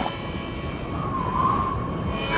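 Low, steady rumble of a heavy truck engine, with a faint, slightly wavering held tone coming in during the second half.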